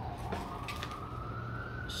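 Emergency vehicle siren wailing in the street, its pitch sliding slowly up and then down in one long sweep, over a steady low hum.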